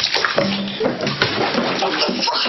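Water splashing and sloshing in a bathtub, starting suddenly.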